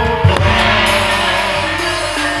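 Live gamelan-style music accompanying a kuda lumping dance: a few deep drum strokes at the start, then a bright shimmering wash over steady ringing metallic tones.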